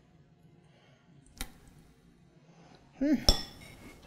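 Metal spoon clinking against a metal springform pan while spreading and scooping food: one light clink about a second and a half in, and a louder, ringing clink near the end, with a brief murmured voice sound just before it.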